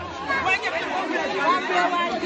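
Several people talking at once in overlapping, indistinct chatter.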